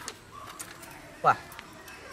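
A single short word spoken with a falling pitch about a second in; otherwise only quiet background.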